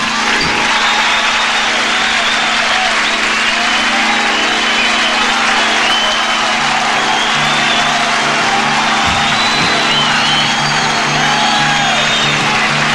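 Audience applauding and cheering with shrill whistles at the end of a rock number. Under the crowd a steady low note is held from the stage, and a deeper pulsing note joins about halfway.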